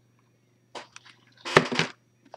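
Cardboard card box and lid being handled: a soft rustle just under a second in, then a louder, brief rustle at about a second and a half.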